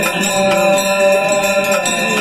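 Devotional aarti hymn chanted and sung in held notes, with bells ringing.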